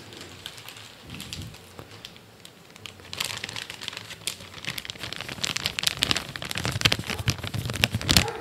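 A clear plastic packaging bag crinkling and rustling close to the microphone as it is handled. It is faint at first and turns busy and louder from about three seconds in.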